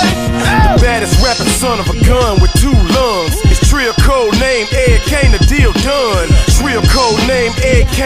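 Hip-hop music: a steady drum beat with a vocal part over it.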